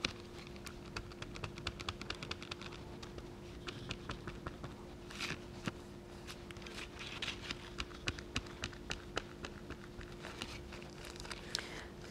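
Kitchen sponge loaded with acrylic paint dabbed on a plastic embossing folder and on a plastic document-folder palette: runs of quick, light taps.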